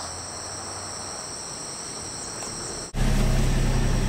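Steady chorus of insects chirring with high, even tones. About three seconds in it cuts abruptly to a louder, steady low drone of a vehicle's engine and road noise heard from inside the cabin.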